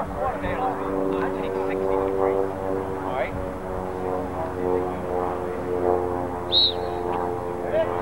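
A referee's whistle gives one short, high blast about two-thirds of the way in, starting a lacrosse faceoff. Under it runs a steady engine drone, with a few shouted voices.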